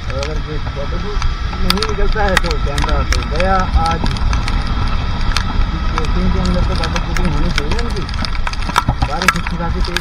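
Motorbike riding through rain: steady wind and road rumble with the engine running underneath, and scattered sharp ticks of raindrops striking the camera. A voice talks over it in several stretches.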